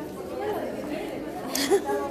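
Several people chatting at once in a large hall, their voices overlapping indistinctly, with a short louder moment near the end.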